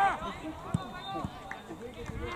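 Young football players shouting and calling out on the pitch, loudest at the start, with a single short thud about three-quarters of a second in.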